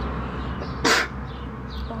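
A single loud, harsh crow caw about a second in, short and sudden, over faint chirps of small birds.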